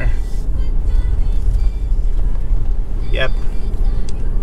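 Car driving, heard from inside the cabin: a steady low rumble of engine and tyre noise. A brief voice sounds about three seconds in.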